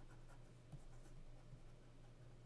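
Faint scratching of a pen or stylus writing by hand in short strokes, over a low steady hum.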